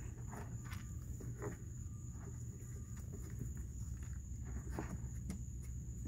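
Faint scattered clicks and rustles of raccoons eating dry kibble from a plastic tub and shifting about on the concrete, over a steady low hum and a thin, steady high tone.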